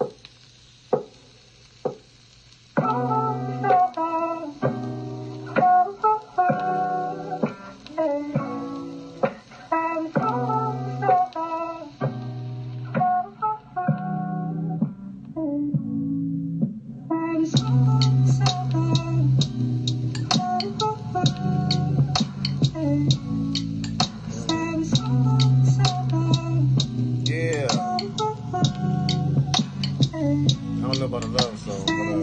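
A hip-hop beat played back in the room: a plucked guitar melody over bass starts about three seconds in. It thins out around the middle and comes back fuller, with drums and quick, regular hi-hat clicks.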